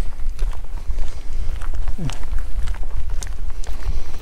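Footsteps on a tarmac road with a steady low rumble of wind on the microphone, scattered clicks over it.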